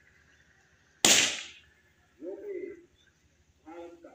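A single sharp bang about a second in, the loudest sound present, dying away within half a second. It is followed by two short snatches of a voice in the background.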